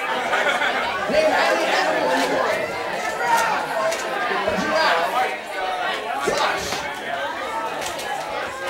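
Crowd chatter: many voices talking over one another.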